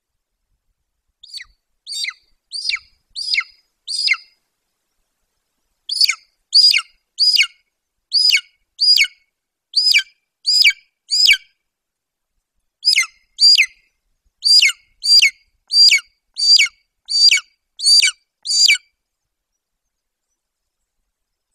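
Golden eagle calling: a series of thin, high, downward-slurred yelps, about three every two seconds, in three bouts with short pauses between them.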